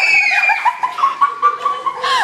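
Startled people shrieking: one long high-pitched scream, then a quick run of short shrill bursts like nervous laughter.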